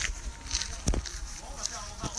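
Footsteps on grass and handheld-camera handling noise while walking, with one sharp knock about a second in.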